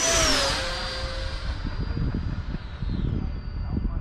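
Freewing L-39 radio-controlled electric ducted-fan jet flying past: a high fan whine that drops in pitch as it goes by, then carries on fainter and steadier. The pilot thinks the fan sounds out of balance.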